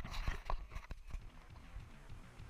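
A quick, irregular run of knocks and clatters, then music with a steady beat comes in toward the end.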